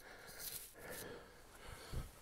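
Near quiet: only faint background noise, with no distinct sound.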